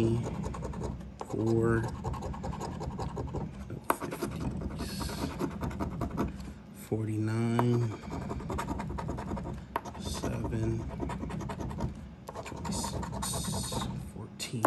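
A coin scratching the latex coating off a paper scratch-off lottery ticket in quick, repeated rasping strokes.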